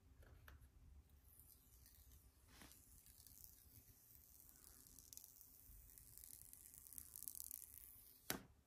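Near silence, with faint rustling that grows slightly toward the end and a few soft clicks.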